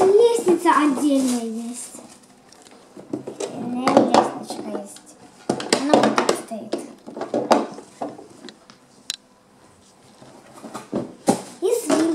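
Hard plastic toy parts clicking, knocking and clattering as a toy playhouse and its pieces are handled and taken out of the box, between a child's remarks.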